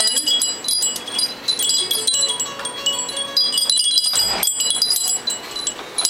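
Metal chimes ringing, many high overlapping tones sounding and fading, with a brief rustle about four seconds in.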